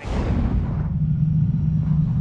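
A deep cinematic rumble with a whoosh opening the show's title sequence. A low, steady drone holds under a swoosh that fades over the first second.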